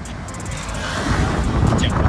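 Strong wind buffeting the camera microphone: a rumbling, noisy rush that grows louder about a second in.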